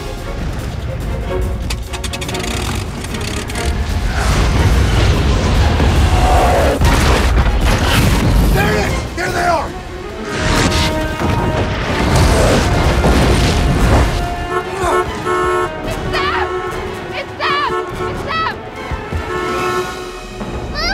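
Film sound mix of a volcanic eruption: dramatic orchestral score over deep booms and a heavy low rumble, loudest through the middle, with brief shouts and cries from the characters.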